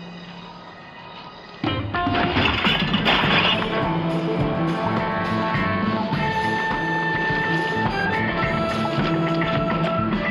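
Television soundtrack: after a quieter opening, a sudden crash under two seconds in, a wire mesh trash basket being knocked over, as loud dramatic music starts and plays on.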